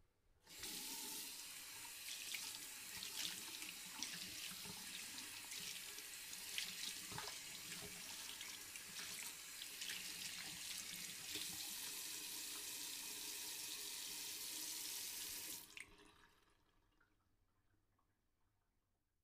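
Tap water running into a sink basin, splashing and bubbling steadily. It starts about half a second in and cuts off fairly suddenly near the end.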